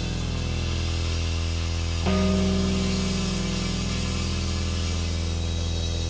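Live hard-rock band playing a slow, sustained passage: held chords over a steady low note, with a new chord struck about two seconds in.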